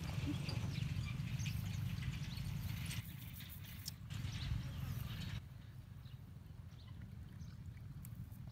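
Wind rumbling on the microphone, with faint scattered clicks and rustles as a cast net and its sinkers are gathered up by hand. The level drops suddenly about three seconds in and again a little after five seconds.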